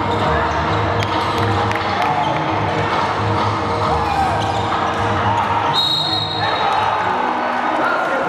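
Live basketball game sound in a gym: a ball bouncing and players' and crowd voices. About six seconds in a steady, shrill whistle sounds for about a second, a referee's whistle stopping play.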